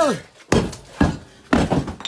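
Concrete block pillar toppling over: the hollow concrete blocks hit the floor in a quick series of heavy knocks about half a second apart.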